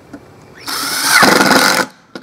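Cordless drill driving a wood screw through a strap hinge into a wooden box lid, in one run of about a second that starts about half a second in and stops just before the end.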